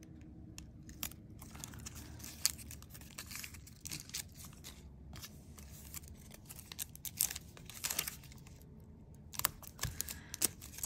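Crumpled foil metal tape crinkling and crackling as it is handled and pressed down, in scattered crackles with a short lull near the end.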